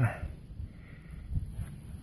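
Quiet rustling of a gloved hand picking through loose, crumbly soil, over a low steady rumble.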